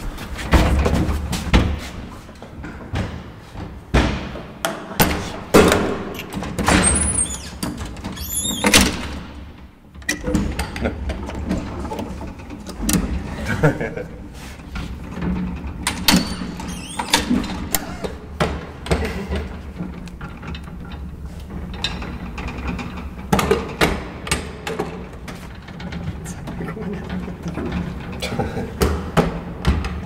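Metal collapsible gate of an old traction elevator being handled, with repeated clanks and rattles.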